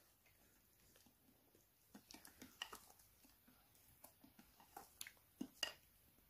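Faint, irregular scrapes and taps of a spatula against a glass mixing dish as a thick sugar and coffee scrub is stirred, starting about two seconds in.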